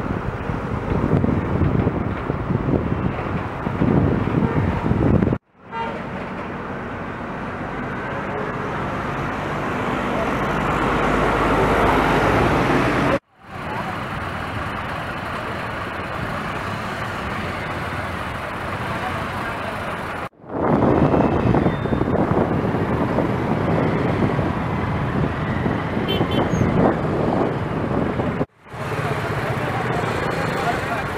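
Road traffic noise: motorcycle and truck engines running around a roadside checkpoint, with voices mixed in. It comes in several segments separated by brief drops to silence.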